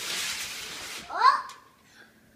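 Wrapping paper ripping off the top of a large gift box for about a second, followed by a child's short cry that rises and falls in pitch.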